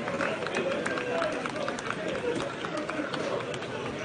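Indistinct men's voices and shouts carrying across an open stadium pitch, over a steady outdoor hiss with scattered short clicks.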